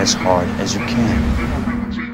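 A man's voice delivering a film line, 'I want you to hit me as hard as you can', over phonk music with a steady held low note and heavy bass underneath.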